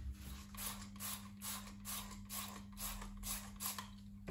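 Plastic trigger spray bottle pumped rapidly, about ten quick squirts at roughly three a second, each with a short hiss of spray and a click of the trigger.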